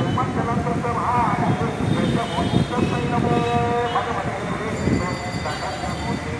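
Voices with long held sung notes, over a steady background din.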